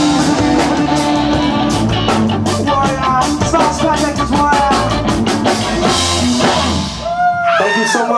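Live rock band playing: electric guitar, electric bass and drum kit, with steady drum hits. About seven seconds in the bass and drums drop out and a voice calls out over the remaining guitar.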